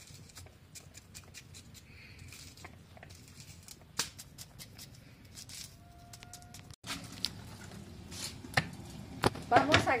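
A knife cutting a fresh nopal cactus pad into small cubes, held in the hand over a bowl: a run of small, irregular, crisp clicks. After a short break about seven seconds in, the clicks go on.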